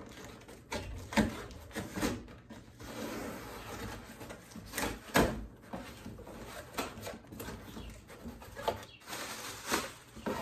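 Cardboard shipping box being opened by hand: tape slit and pulled, flaps scraping and rustling, with irregular sharp knocks, the loudest about one second and five seconds in.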